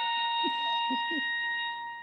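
Bugle sounding one long held note of a military call, fading out at the end.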